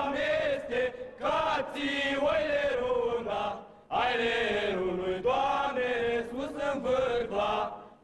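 A group of male carolers singing a Romanian colindă (Christmas carol) in slow, drawn-out lines. There is a brief pause for breath a little under four seconds in, and another near the end.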